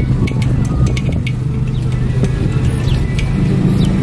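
A BMW M3's engine running low and steady as the car creeps along at walking pace, heard from inside the cabin, with a few light clicks over it.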